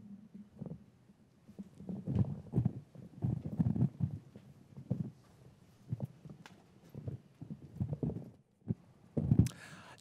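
Handling noise of a handheld microphone being carried and passed to a reporter: a string of irregular dull bumps and knocks on the live mic, with no speech.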